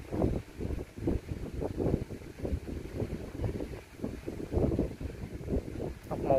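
Low, uneven rumble of wind buffeting the microphone, gusting up and down irregularly.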